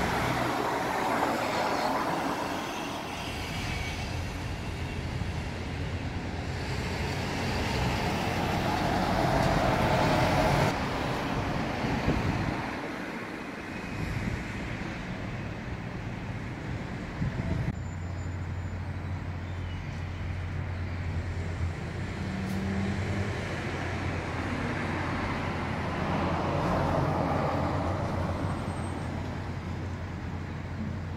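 Road traffic heard outdoors, with vehicles passing in slow swells, three times loudest. About two-thirds of the way in, a steady low engine hum joins and runs on under the traffic.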